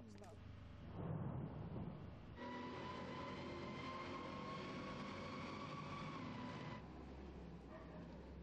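Tracked armoured personnel carrier driving past, its engine and running gear giving a steady whine that starts suddenly a couple of seconds in and stops abruptly near the end; a lower, steadier rumble follows.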